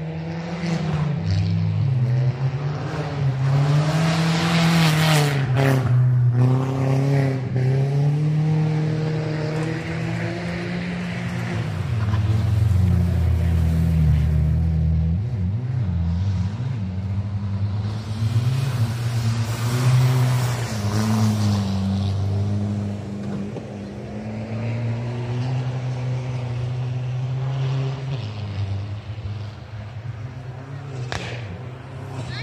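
Racing car engine on a dirt circuit, revving up and dropping back again and again as the car accelerates out of and slows into the corners, with its pitch rising and falling.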